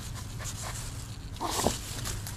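A Yorkshire Terrier pushing and scrabbling through dense, long-bladed leaves: a run of quick rustles and scrapes, with a louder burst about a second and a half in.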